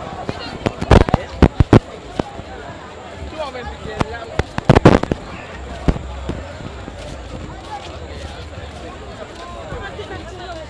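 Firecrackers going off in quick strings of sharp bangs: a cluster of four about a second in, another cluster around five seconds, and a single bang about a second later, over crowd chatter.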